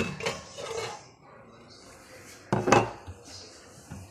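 Glasses and dishes clinking and clattering in a plastic dish drainer as a hand picks one out, with a louder clatter about two and a half seconds in.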